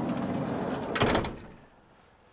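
A campervan's sliding side door rolling open on its runners and ending in a single clunk about a second in.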